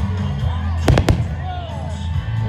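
Aerial fireworks shells bursting: a quick cluster of three sharp bangs about a second in, heard over music and crowd voices.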